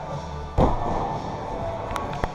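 A climber dropping off a bouldering wall and landing on the padded gym floor: one heavy thud about half a second in, over continuous background music.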